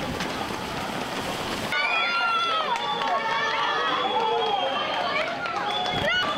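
A steady rushing outdoor noise, then, from just under two seconds in, a crowd of children shouting and cheering, many high voices overlapping.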